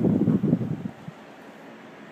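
Loud rumbling buffeting on the phone's microphone for about the first second as the camera is swung along the wall, then it drops to a quiet, steady background hiss.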